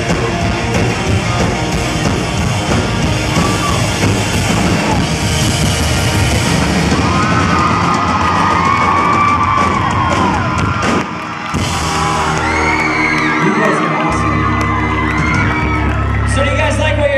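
Live rock band playing loud to the close of a song. From about halfway through, a concert crowd screams and whoops over it, and a low note is held under the cheering near the end.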